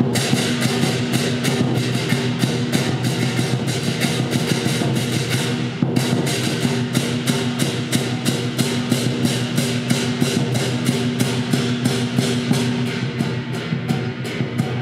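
Live lion dance percussion: a large lion drum beaten with hand cymbals clashing fast and evenly, about four strikes a second, over a steady ringing tone. The strikes break off briefly about six seconds in, then carry on.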